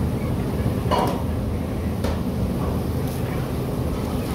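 Steady low background rumble, with a brief sharp sound about a second in.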